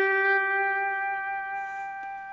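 A single electric slide-guitar note held at the eighth fret of the B string on an Epiphone Casino, ringing on and slowly fading.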